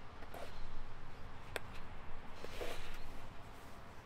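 Handling sounds as a foam-padded SAM splint is shaped around the lower leg: faint rustling and scuffing with one sharp click about one and a half seconds in, over a low rumble.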